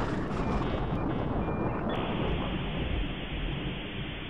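Outro sound effects: a steady, noisy rumble like thunder, with faint high beeping tones in the first two seconds.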